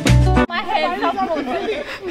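Background music with a heavy bass beat that cuts off abruptly about half a second in, followed by several people chattering.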